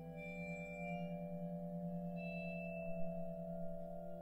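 Contemporary percussion ensemble music: several sustained, overlapping ringing tones held with no clear strokes, the lowest one wavering in a quick pulse. A faint struck accent comes about three seconds in.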